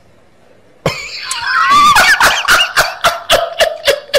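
A loud burst of laughter from a person, starting suddenly about a second in with a high wavering cry and breaking into short rhythmic bursts, about three a second.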